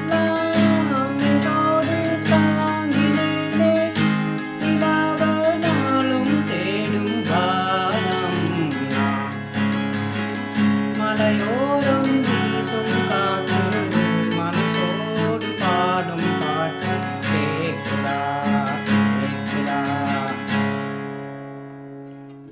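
Acoustic guitar strummed in a steady rhythm, capo on the fourth fret, playing A-minor-shape chords that sound in C-sharp minor, with a man singing the melody over it. The strumming stops and the last chord rings away near the end.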